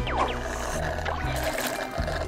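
Cartoon background music with a steady bass line, under a liquid-pouring sound effect as an IV drip bag drains. A short falling glide sounds at the very start.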